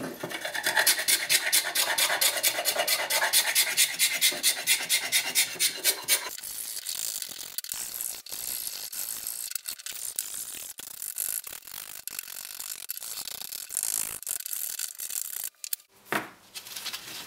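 Steel ruler edge scraping the old finish off a wooden plane handle. For the first six seconds it goes in quick, even strokes, about five a second, then it turns into quieter, irregular scraping.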